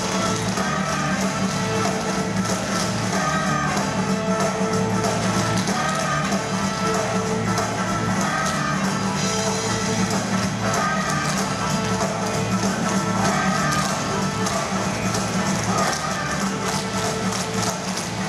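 Recorded backing music playing steadily over a group of tap shoes striking a stage floor in rhythm, many quick metallic taps throughout.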